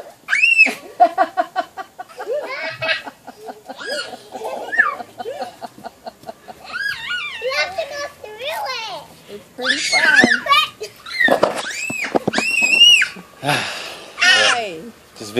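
Young children squealing, shrieking and laughing at play, with high, rising and falling squeals throughout.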